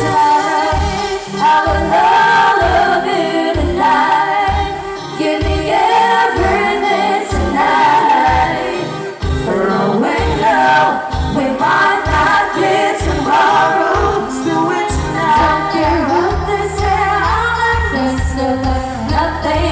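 A live pop band playing: several voices singing over electric guitar, bass and a steady drum beat.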